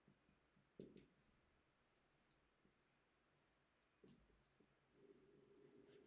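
Faint squeaks and taps of a dry-erase marker writing on a whiteboard, with a few short high squeaks close together about four seconds in.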